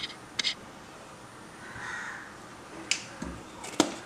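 A few sharp clicks and knocks from a jar being handled while cooking fat is poured from it into a nonstick frying pan, the loudest knock near the end. A brief soft noisy sound comes about halfway through.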